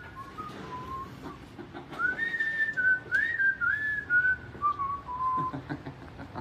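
A person whistling a tune: one clear tone stepping between held notes. A short low phrase comes near the start, then a longer phrase from about two seconds in that winds down to lower notes near the end.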